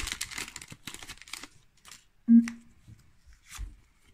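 Foil wrapper of a Pokémon booster pack crinkling and tearing as it is pulled open and the cards are slid out. A sharp knock a little past two seconds in is the loudest sound, with a softer thump near the end.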